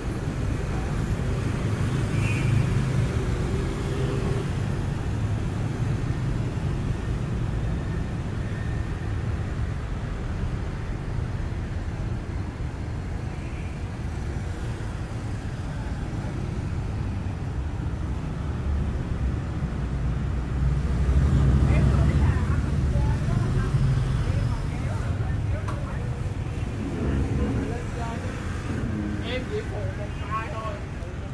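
City street traffic: a steady low rumble of cars and motorbikes on the road, swelling as vehicles pass about two seconds in and again for a few seconds past the twenty-second mark.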